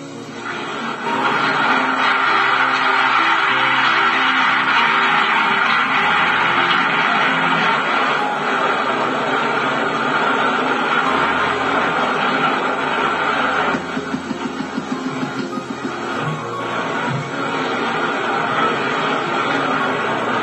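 Background music with long held notes, dipping briefly in loudness about two-thirds of the way through.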